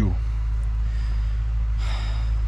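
A person's quick breath in near the end, heard over a steady low rumble.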